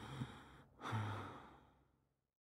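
A woman's breathy sighs: two long exhalations, the second beginning about a second in with a short low moan in the voice, then fading away.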